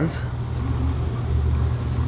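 Steady low rumble with a faint hiss of background noise, no other distinct event.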